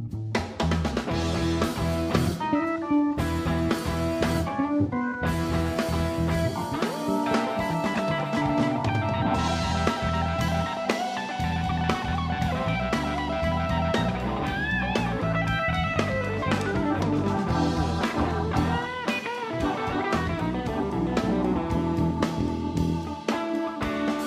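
Funk-rock band playing an instrumental passage: electric guitar over bass guitar and drum kit, with bent guitar notes around the middle.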